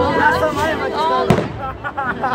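A single firework shell bursts with a sharp crack a little past a second in, amid people's voices around the microphone.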